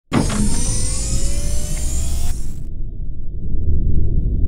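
Synthesized sci-fi intro sound effect: a sudden swell of noise with slowly rising tones over a deep rumble. About two and a half seconds in, the high part cuts off abruptly, leaving only the low rumble.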